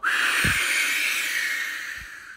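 A man blowing a long, hard breath out through pursed lips, acting out the big bad wolf blowing the house down. The rush of air starts suddenly and slowly fades toward the end.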